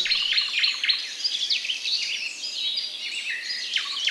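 Several songbirds singing at once: a dense dawn chorus of quick, high chirps and short trills overlapping throughout.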